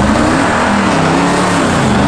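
A 2009 Mercedes G55 AMG's supercharged V8 pulling past under throttle, with a loud exhaust note whose pitch wavers slightly.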